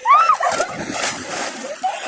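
A person splashing into water, a loud burst of splashing lasting about a second, after a short shout right at the start.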